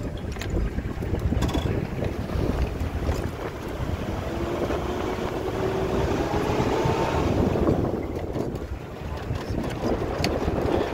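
Wind buffeting the microphone over the low rumble of a safari vehicle driving on a dirt track, heard from under its open pop-up roof. A rising whine comes through from about four to seven seconds in.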